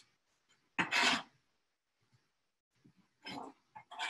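Chef's knife blade scraping across a plastic cutting board while shredded cabbage is swept off it: one short, loud scrape about a second in, then two softer scrapes near the end.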